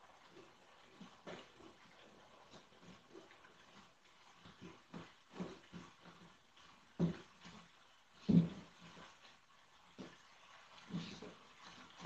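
Sheets of corrugated cardboard being handled on a table: scattered light taps, rustles and scrapes, with two louder knocks about seven and eight and a half seconds in.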